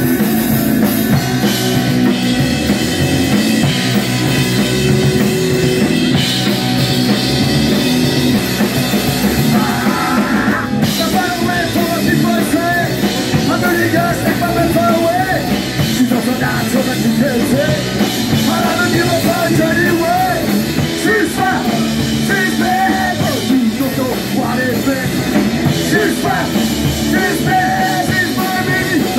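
Live rock band playing loudly: drum kit, electric bass and electric guitar, with a singer's voice over them.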